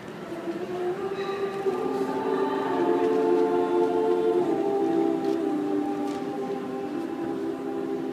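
A women's a cappella group singing long held notes in close harmony, the voices coming in one after another about a second in and swelling into a full chord over the next two seconds, then holding with slow changes of pitch.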